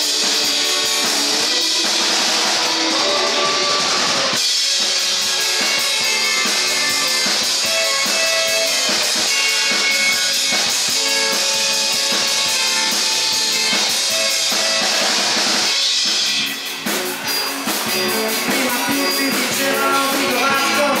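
Live rock band playing 1960s–70s style music, with drum kit, guitars and bass. About three-quarters of the way through, the sound thins for a moment, leaving mostly drum beats before the full band comes back.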